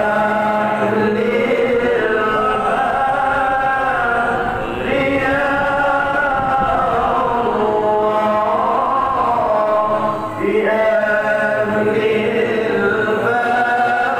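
Islamic devotional chanting (sholawat) sung in long melodic phrases over a steady low drone, with a new phrase beginning about every five seconds.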